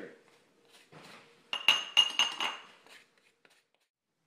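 A metal table knife clinking against a drinking glass of melted butter: about half a dozen quick taps with a short glassy ring, starting about a second and a half in.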